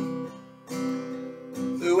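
Acoustic guitar strummed, three chords each struck and left ringing, with a voice coming in right at the end.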